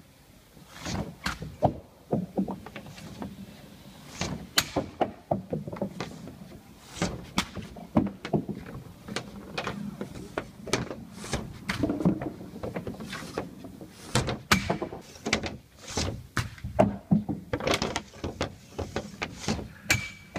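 Hockey stick and pucks on a plastic shooting pad on a wooden deck: a string of sharp clacks, scrapes and knocks as drag shots are taken one after another.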